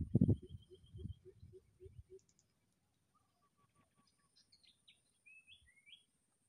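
Birds calling in forest, with short chirps that glide down in pitch near the end. The first two seconds carry a low pulsing about five times a second and low rumbling thumps, the loudest part, before it grows faint; a thin steady high whine runs underneath.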